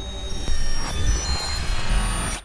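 Electronic logo sting from the outro sound design: a deep bass rumble with thin, steady high whining tones over it, jumping louder about half a second in.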